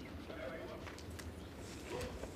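Quiet indoor arena ambience with a brief faint voice and a few light clicks.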